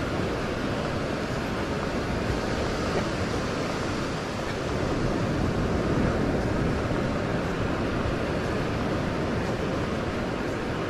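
Steady ocean surf breaking on a sandy beach, mixed with wind on the microphone, swelling slightly a little past the middle.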